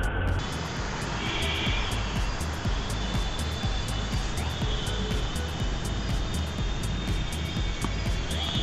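Steady engine noise from a fixed-wing aircraft, with background music playing over it.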